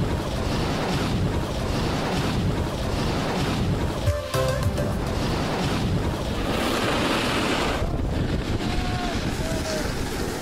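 Steady rush of wind buffeting an action camera's microphone as its wearer snowboards down a groomed slope, mixed with the hiss of the board sliding on snow.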